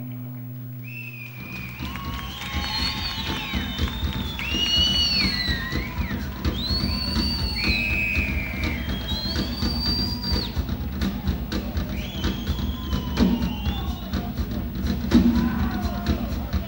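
Live rock band in a concert hall: a sustained note dies away, then from about a second in the drum kit plays a dense run of hits. High, gliding whistle-like tones sound over it.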